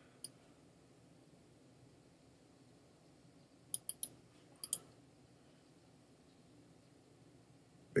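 Computer mouse clicking. There is one click just after the start, then three quick clicks close together about four seconds in, and two more shortly after.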